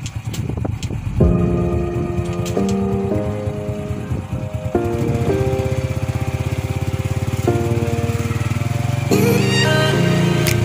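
Background music: held synthesizer chords that change every second or two over a steady low drone.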